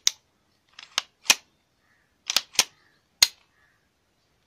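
Semi-automatic pistol being worked by hand during a function check: a string of sharp metallic clicks from its slide and action, some coming in quick pairs.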